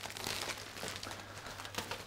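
Faint crinkling and rustling of a plastic snack packet being handled and soft cake being crumbled by hand, over a low steady hum.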